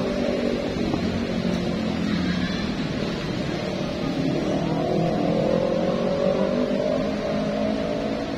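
A motor vehicle's engine drones steadily. Its pitch sags a little midway and climbs again near the end.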